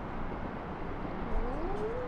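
Steady outdoor background rumble with no clear single source. About a second and a half in, a faint tone rises and then holds.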